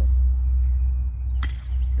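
A single sharp crack of a bat hitting a plastic wiffle ball about one and a half seconds in, over a steady low rumble.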